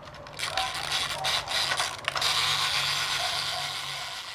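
Battery-operated toy fishing game running: its small motor hums steadily as it turns the ponds of plastic fish, with repeated clicking from the gears and plastic parts.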